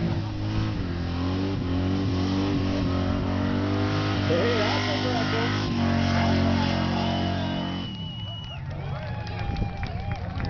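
Ford Ranger pickup's engine held at high revs in a burnout, one steady sustained note that falls away about eight seconds in. The engine doesn't sound stock: the announcer jokes it has a Canadian Tire breather flip kit on its intake.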